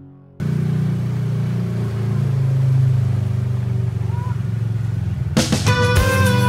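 Engine of a four-seat side-by-side UTV running steadily with a low drone. It cuts in suddenly about half a second in, as the music fades out, and music returns near the end.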